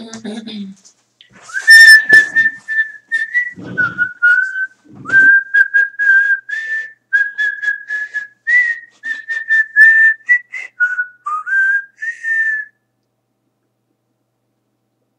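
A person whistling a tune: a run of short held notes that step up and down in pitch, with quick breaths between phrases, stopping about a second before the end.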